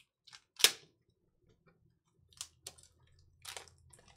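Trading cards and a clear plastic card sleeve being handled: one sharp click about half a second in, then a few softer clicks and short rustles.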